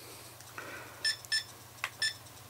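ToolkitRC ST8 servo tester giving short, high electronic beeps as its rotary dial is turned to change a setting, three beeps about a second in, then a small click near the end.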